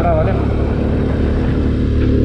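A small motorcycle's engine running steadily as it is ridden, a low even drone. A voice trails off at the very start.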